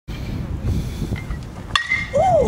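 Metal baseball bat striking a pitched ball squarely near the end: one sharp ping with a brief metallic ring. The ball is hit hard, 'smoked'.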